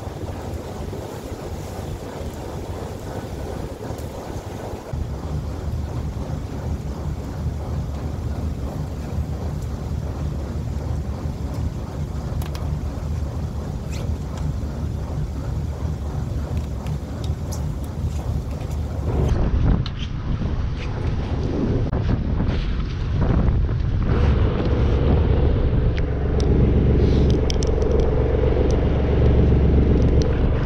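A fishing boat's engine running with a steady low hum, mixed with wind on the microphone and occasional handling clicks. The engine hum grows louder in the last third.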